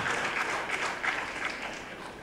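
Audience applauding, the clapping fading away.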